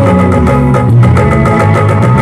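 Live band music at full volume: guitars and bass over a steady drum beat, an instrumental passage between sung lines.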